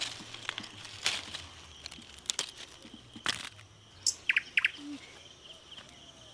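Small birds chirping with a steady high pulsing trill in the background, and a few short sharp snaps and rustles from pointed gourds being picked off the vine, about one a second early on.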